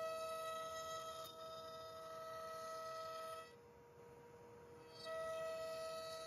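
CNC router spindle running with a steady, quiet high whine of several fixed pitches while a roundover form bit cuts the edge of a wooden tray. The whine drops away for about a second and a half midway, then comes back at the same pitch.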